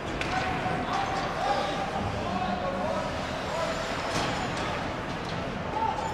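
Ice hockey rink ambience: a steady murmur of spectators' chatter in the stands, with a couple of sharp clacks from stick and puck play on the ice a little after four seconds.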